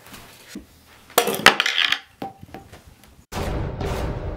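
A glass jar and its metal lid clattering and clinking on a wooden table, with a loud crash about a second in and a few sharp clinks after it. Near the end a low sustained sound sets in and fades slowly.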